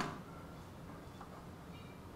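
Quiet room tone with a steady low hum, opened by a brief soft click.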